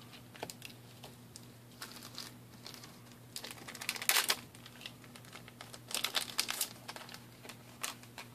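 Force of Will trading cards being handled and laid down on a pile: soft clicks and crinkling rustles that come in two busier bursts, a little after three seconds in and around six seconds in.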